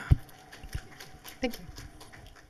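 A handheld microphone gives a single loud handling thump as it is passed from hand to hand. Faint, scattered clicks and taps follow.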